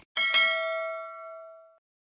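A bell-like ding sound effect, struck twice in quick succession and ringing out, fading away over about a second and a half, just after a short click.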